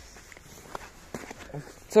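Quiet footsteps on concrete paving with rustling of a jacket and bag, and a few soft clicks.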